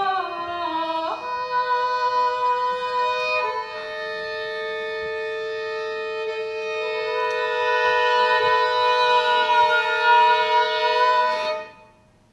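Violin playing slow contemporary chamber music: a falling line of notes, then long held notes with two pitches sounding together. The music stops suddenly near the end.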